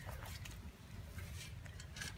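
Faint scraping and rustling of a shovel blade working through loose soil, compost and granular fertilizer to mix them, over a low steady rumble.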